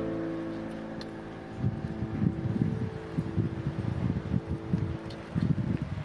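A held musical chord dies away over the first second and a half, then wind buffets the microphone in irregular low rumbling gusts.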